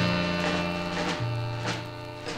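1958 rhythm and blues record played from an original vinyl 45: the band's closing chord fading out, with a bass change and a couple of drum hits.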